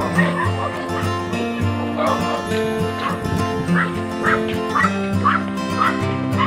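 Background music with sustained notes, over which a small dog barks in short, high yaps again and again.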